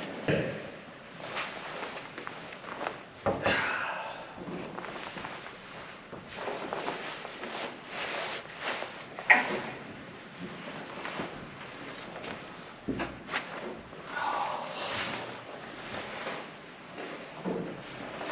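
Scattered clunks, knocks and scuffs of a person clambering about in and around a tank's open steel engine compartment; no engine is running.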